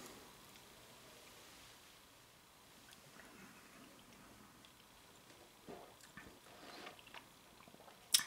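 Near silence: room tone, with a few faint soft clicks and small handling sounds in the second half.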